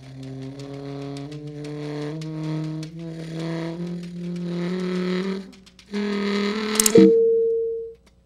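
Tenor saxophone playing a run of low held notes that climb step by step, mixed with computer-generated tones from the interactive interface. About seven seconds in, a sharp click sets off a single ringing electronic tone that fades away.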